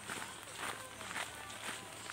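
Footsteps on a packed dirt and gravel trail, about two steps a second.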